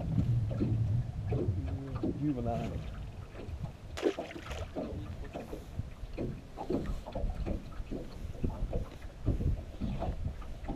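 Indistinct low talk in a small open fishing boat, over a low wash of water and wind noise.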